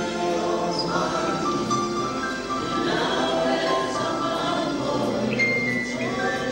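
A church praise team singing a gospel worship song: a group of voices together, with notes held long.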